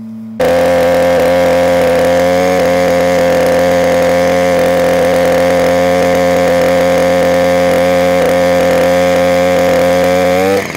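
Septic vacuum truck pumping through a suction hose set into the septic tank: a loud, steady machine drone with a strong whine, starting abruptly about half a second in.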